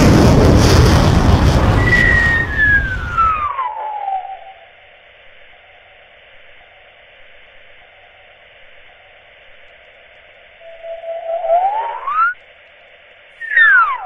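Cartoon rocket sound effect: a loud rushing blast with a whistle falling in pitch, cutting off about three and a half seconds in. After a faint hiss come sci-fi flying-saucer whistles near the end, one sliding up in pitch and one sliding down.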